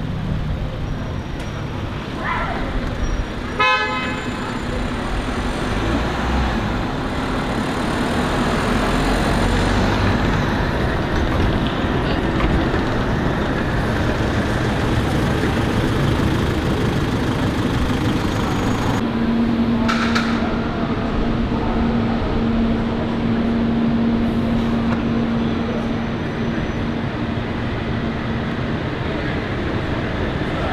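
City street traffic, with buses and cars passing and pulling up, and a short vehicle horn toot about four seconds in.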